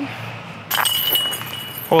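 Disc golf basket chains clinking as a short tap-in putt drops in, with a metallic ringing note for about a second.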